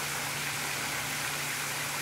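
Fountain jets splashing steadily into a shallow tiled pool, a constant hiss of falling water, with a low steady hum underneath.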